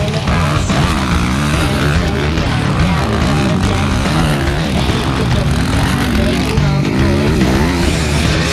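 Dirt bike engines revving up and down repeatedly as the bikes ride the track, mixed with a backing music track.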